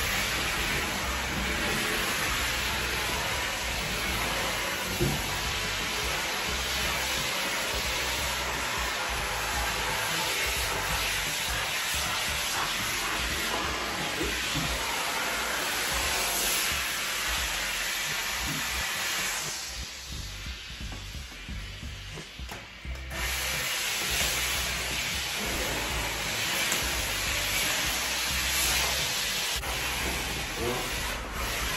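Handheld steam cleaner hissing steadily as its cloth-covered wand is worked over wall tiles. The steam stops for about three seconds a little past the middle, then starts again.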